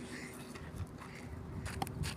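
Quiet outdoor background of a backyard cricket delivery on a dirt pitch, with two faint sharp knocks close together near the end as the ball comes down to the batter.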